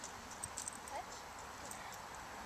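Footsteps crunching in fresh snow as the handler and puppy shift about, with a quick cluster of sharp crunches about half a second in and a brief high chirp just before a second in, over a steady outdoor hiss.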